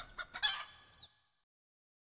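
Tail of the closing logo's sound effect: a few short sharp calls, the loudest about half a second in, dying away by about a second in, then silence as the audio ends.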